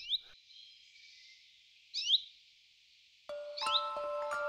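A small bird chirps three times, about every two seconds, each a short quick rising call, over a faint high hiss. Soft music with held, chime-like notes comes in about three seconds in.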